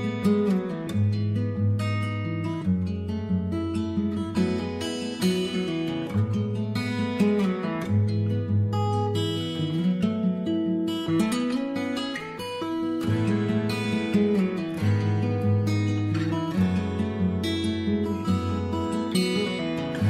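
Acoustic guitar music in a slow rock ballad style, picked and strummed over sustained low bass notes.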